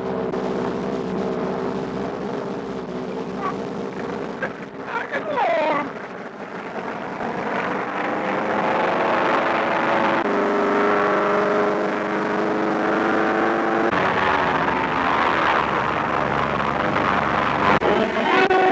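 A biplane's engine droning steadily on an early sound-film track, with a few brief vocal exclamations about four to six seconds in. From about eight seconds in, the sound grows louder, and its held tones shift in steps twice.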